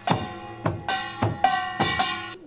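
Korean samulnori percussion from a one-man rig of seven instruments, played with hands and feet. Drum and janggu strokes come several times a second under the ringing metallic clang of the kkwaenggwari and jing gongs.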